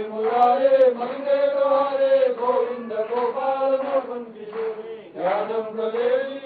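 Male voices chanting Sanskrit devotional verses to a slow, steady melody with long drawn-out syllables, with a brief pause about five seconds in.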